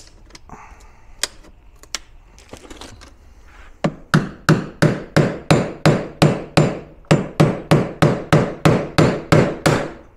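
A hammer striking a stiff metal scraper wedged into the seam of a plastic battery case, driving the blade in to split the glued lid off. It begins with a few light clicks and scrapes of the blade along the seam. About four seconds in, a run of about twenty sharp, ringing hammer blows follows at roughly three a second, with a brief pause partway through.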